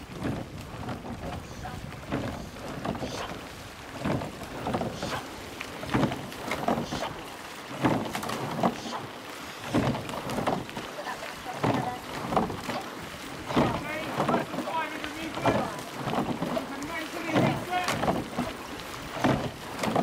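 An eight-oared rowing shell under way, its oars working in a steady rhythm with repeated swells of splash and rigging noise each stroke, over wind on the microphone. A voice calls out in the second half.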